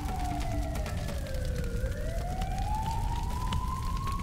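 Emergency vehicle siren wailing in one slow cycle: the pitch falls for about two seconds, then rises again, over a steady low rumble.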